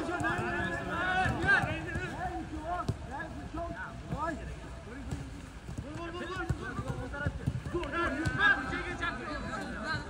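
Footballers' voices calling and shouting to each other across the pitch during a training drill, with a few short sharp knocks among them.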